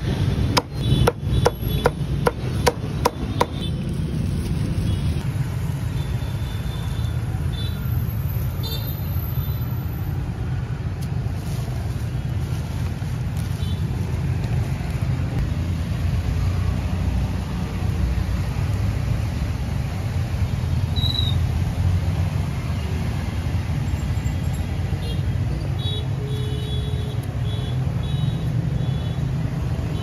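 A cleaver chopping roast goose on a thick wooden chopping block: about ten fast, sharp strikes over the first three seconds or so. Then a steady low background rumble.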